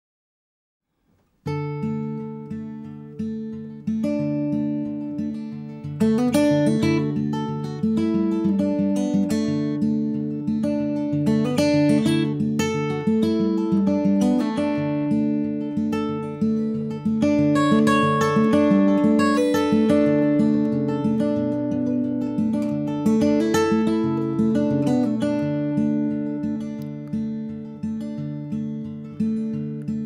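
Solo acoustic guitar, capoed and fingerpicked, playing an instrumental intro of steady repeated plucked notes. It starts about a second and a half in after near silence, and fills out and grows louder about six seconds in.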